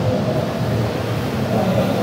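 Steady background noise of a large exhibition hall, with no voice close to the microphone.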